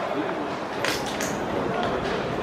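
Indistinct background voices chattering, with a short sharp noise about a second in.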